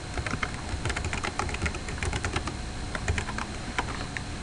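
Typing on a computer keyboard: a quick, irregular run of key clicks as a short line of text is entered.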